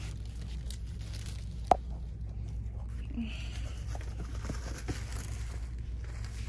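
Plastic-wrapped packs of gift tissue paper rustling and crinkling as they are handled, with one sharp click a little under two seconds in, over a steady low hum.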